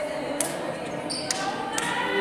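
Basketballs bouncing on a gymnasium court, a few irregular sharp knocks, over indistinct chatter of voices.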